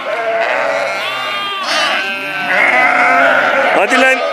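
Sheep and lambs bleating, many overlapping calls, with one long call loudest in the second half. These are lambs and ewes calling to each other as the lambs look for their mothers; the ones still calling have not yet found theirs.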